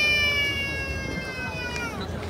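A long, high, drawn-out call held at one pitch, which bends down and breaks off just before the end.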